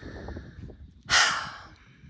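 A woman's deep breath: a soft intake, then a loud sighing exhale just over a second in that trails off.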